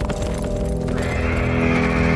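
A horse whinnying, starting about a second in, over background score with long held tones.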